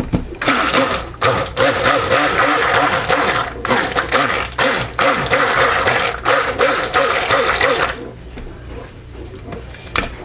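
Handheld stick blender running in a tub of soap batter, its motor whirring and the blade churning the thick liquid. It starts about half a second in and stops shortly before the end.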